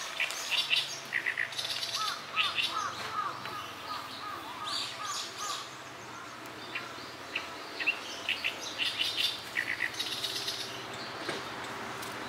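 Several birds chirping and singing. From about two seconds in, one bird repeats a run of short, looping notes for a few seconds.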